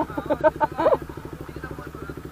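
Motorcycle engine running at low speed, an even rapid pulse with no change in pitch, with a burst of talk and laughter over it in the first second.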